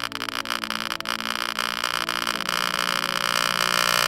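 Electronic sound effects of a reactor simulation: dense rapid clicking that thickens into a buzzing drone and grows steadily louder as the simulated chain reaction runs away.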